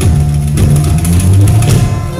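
Live amplified Amazigh band music, with a heavy, sustained bass line under plucked guitar and light drum hits.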